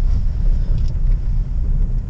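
Steady low rumble of a pickup truck's engine and road noise, heard inside the cab as the truck drives slowly.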